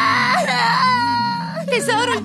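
Cartoon alien child bawling loudly: a long held wailing cry that breaks into shorter sobbing sounds near the end.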